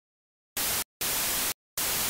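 Bursts of steady static hiss that switch on and off abruptly three times, with dead silence between them: a short burst about half a second in, a longer one at about one second, and a third starting near the end.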